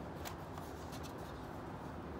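Faint paper flicking as a stack of stickers is thumbed through by hand, a few light flicks.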